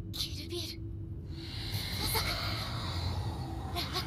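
Anime film soundtrack playing at moderate level: soft Japanese character dialogue, with a steady hissing effect through the middle.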